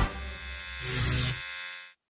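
Electrical buzz and hum of a neon sign flickering on, swelling a little midway and cutting off abruptly just before the end.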